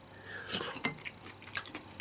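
A few light clicks and taps of a wooden skewer and meat against a plate of grilled beef offal skewers, with soft chewing between them.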